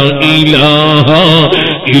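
A man chanting Arabic devotional verse in a slow, melismatic style, the pitch wavering and ornamented, over a steady low held tone. The chant breaks off briefly near the end.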